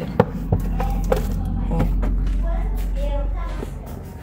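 A cardboard cake box being handled and lifted out of a refrigerator: several light knocks over a low steady rumble that fades out near the end, with faint voices in the background.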